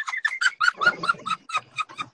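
A woman laughing hard, in a rapid run of short, high "ha-ha-ha" bursts about seven a second.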